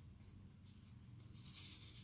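Faint scraping of a bone folder rubbed along cardstock, creasing a fold on the score lines.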